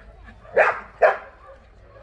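A young dog barks twice, two short, loud barks about half a second apart.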